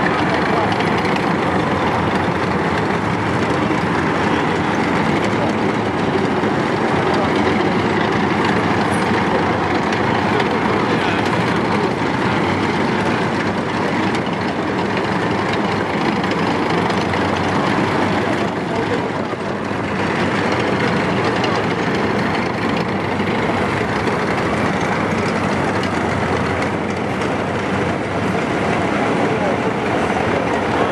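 Diesel engines of a slow-moving military column, tracked self-propelled howitzers followed by KrAZ trucks carrying Grad rocket launchers, running close by in a steady, continuous din.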